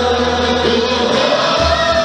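Hasidic wedding music: voices singing a melody together over a keyboard's sustained bass notes, with a new bass note coming in near the end.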